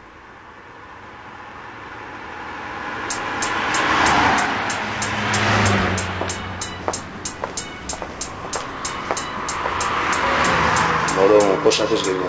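Intro of a rap track: a rising rush of noise, like a passing car, swells over the first few seconds. About three seconds in, a steady ticking starts at about four ticks a second and keeps going. A second swell of noise comes near the end.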